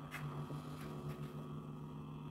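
Low, steady electrical hum from an electric guitar amplifier left on with the playing stopped, with a faint click soon after it starts.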